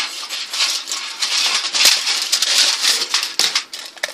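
Aluminum foil crinkling loudly and continuously as a sheet of it is handled and crumpled.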